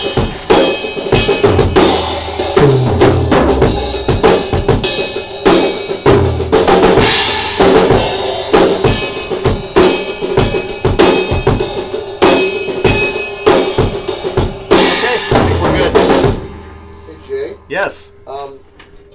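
Drum kit played steadily in a soundcheck, kick, snare and cymbals together. The playing stops about 16 seconds in and the kit rings out briefly.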